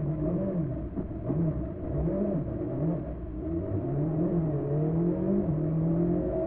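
Rally car engine heard from inside the cockpit, revving up and falling back about once a second as the car is driven hard through tight turns, then pulling more steadily with a slowly rising pitch near the end.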